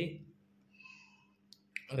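A man's speech trails off into a short quiet pause, broken by two faint clicks about a second and a half in, just before his speech resumes.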